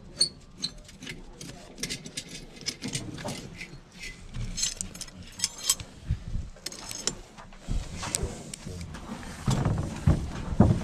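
Scattered knocks, taps and metallic clinks of clay bricks and steel tools being handled on a scaffold during bricklaying, with a few heavier knocks near the end.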